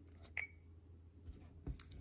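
A single short electronic beep from an EdgeTX radio transmitter as a menu tab is tapped on its touchscreen, followed by a couple of faint handling knocks.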